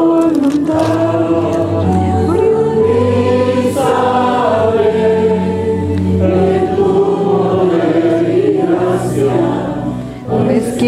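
A hymn sung by several voices together, led by two women on microphones, over steady low sustained accompaniment notes. The singing dips briefly near the end, between lines.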